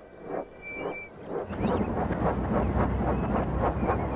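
Steam locomotive puffing sound effect played backwards: a few separate chuffs, then from about a second and a half in a louder, rapid run of chuffs over a low rumble.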